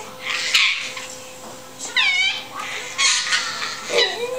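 A baby and a young girl laughing at play, in short bursts, with one high-pitched squeal about two seconds in.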